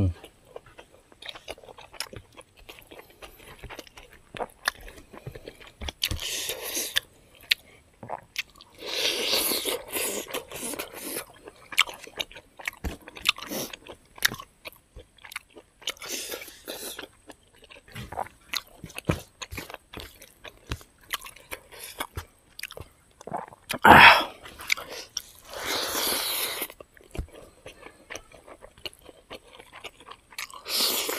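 Close-miked chewing of smoked pork and rice eaten by hand, with many small mouth clicks and crunches. A few louder hiss-like bursts come every several seconds, the loudest about 24 s in.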